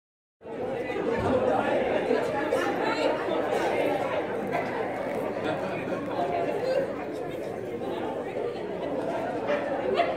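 A church congregation chattering, many voices talking at once in a large hall. It starts about half a second in.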